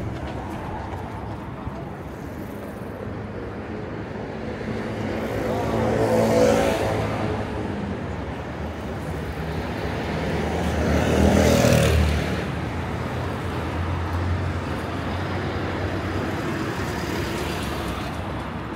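City road traffic: cars driving past on the street alongside, two going by loudly, about six seconds in and just before twelve seconds, over a steady traffic hum.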